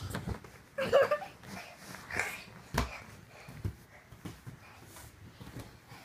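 Thumps, knocks and rustling from a toddler clambering onto a leather couch, with one loud low thump about three seconds in. A brief voice sound comes about a second in.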